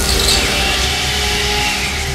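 Cartoon magic sound effect of energy being drawn from the princes into a crystal ball: a steady rushing hiss that slowly fades. It plays over held notes of background music.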